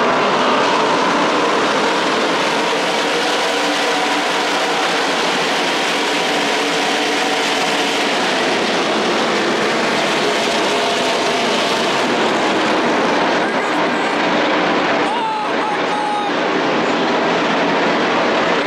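Loud, steady roar of many racing engines running together with no break.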